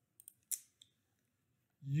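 A few quick, faint computer mouse clicks, the loudest about half a second in.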